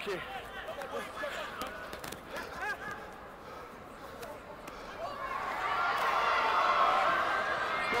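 Rugby players' voices calling out at a lineout, then a swell of many voices shouting together from about five seconds in as the ball is thrown and contested.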